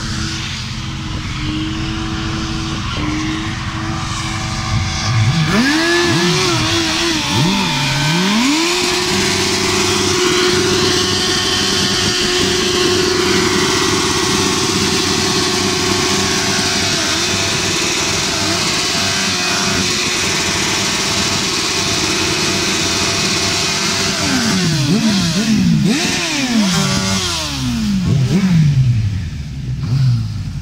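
Motorcycle engine revved up and held at high revs for a long stretch during a rear-tyre burnout, the note steady and unbroken. Near the end the revs drop and climb again in a series of quick blips.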